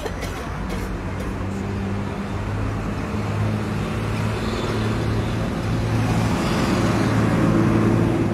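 Road traffic with a motor vehicle engine running nearby: a steady low hum that grows slowly louder.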